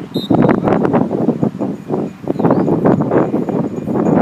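Wind buffeting the microphone in irregular gusts on an open football pitch, with faint distant voices from the field.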